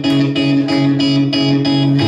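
Guitar strummed in a steady rhythm, about three strokes a second, with no voice over it.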